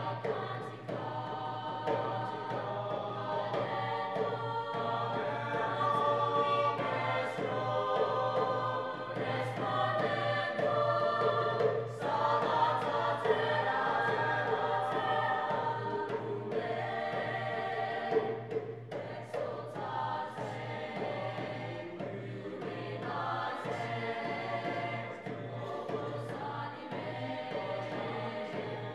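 A mixed-voice high school choir singing, accompanied by a hand drum struck by hand in a steady rhythm.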